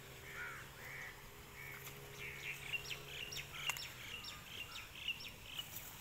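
Small birds calling: three short arched calls in the first two seconds, then a quick run of short high chirps for about three and a half seconds.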